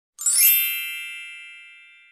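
Edited-in subscribe-reminder chime: a single bright bell-like ding that strikes suddenly and rings down, fading over about two seconds.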